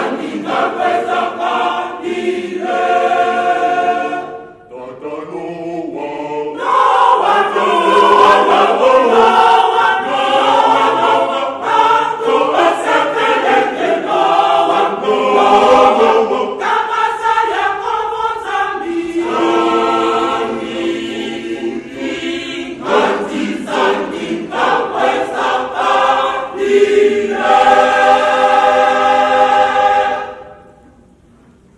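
Large mixed choir of men's and women's voices singing a hymn together, with a short break between phrases about four and a half seconds in.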